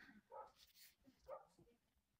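Near silence: faint room tone, broken by two faint, short sounds about half a second and a second and a half in.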